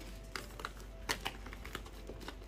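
Hard clicks and clacks of iPhone handsets knocking against each other as they are gathered and stacked in the hand, about half a dozen, with the loudest a little after a second in.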